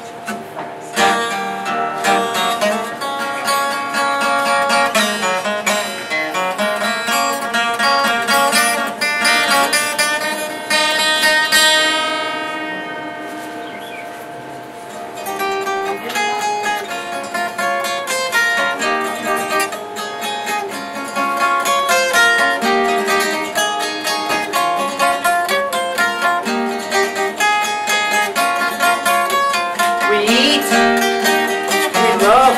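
Solo acoustic guitar playing the instrumental introduction to a song, with picked and strummed chords. About twelve seconds in, a chord is left to ring and fade for a few seconds before the playing picks up again.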